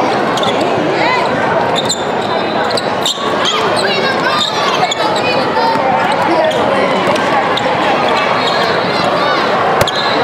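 A basketball bouncing on a hardwood court as it is dribbled, with short high squeaks of shoes on the floor and the voices of players and spectators, all echoing in a large hall.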